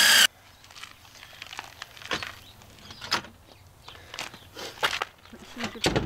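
Cordless drill driving a screw into the bus doorway's metal trim, its motor whine cutting off sharply a moment in; then scattered light clicks and knocks of tool handling.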